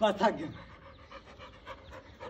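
Black Labrador panting quickly with its mouth open, a run of soft, even breaths. A brief loud voice cuts in at the very start.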